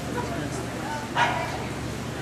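A single short, sharp dog bark or yap a little over a second in, over a steady low hum and background murmur.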